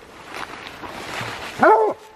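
A hunting hound at the tree of a treed raccoon, giving one loud bark near the end, after rustling in dry brush and leaves.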